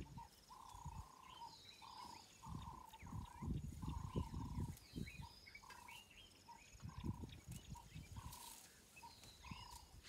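An African bush elephant feeding on a bush at close range: irregular low rustling and tearing of leaves and branches, loudest a few seconds in and again around seven seconds. Behind it, birds call, one with a short repeated note about twice a second.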